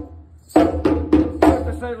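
Djembe played with bare hands: a brief pause, then a run of open-toned strokes starts about half a second in, at roughly four to five strokes a second, each with a short ringing tone. A man's voice calls out near the end.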